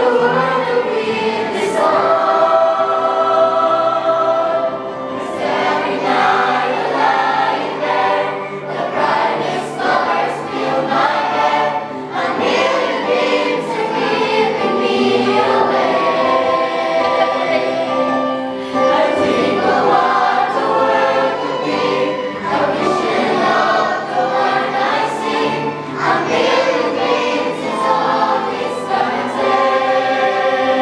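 A group of young adult singers and children singing together in chorus, with long held notes.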